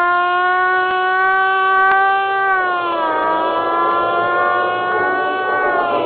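A siren sound effect wailing on one pitch, then sliding lower about halfway through and again near the end.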